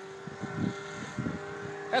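The engine and propeller of a tandem powered paraglider in flight, humming steadily, with a few low rumbles of wind on the microphone.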